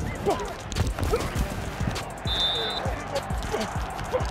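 American football field sound picked up by a player's body microphone, under a music bed: short shouted voices and dull thumps. A brief steady high tone sounds about halfway through.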